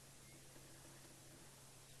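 Near silence: a faint, steady low hum under light hiss.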